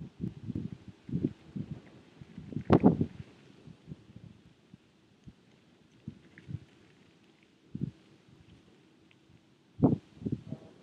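Wind buffeting the microphone in irregular low gusts, heaviest in the first few seconds and again near the end, with one sharp knock about three seconds in.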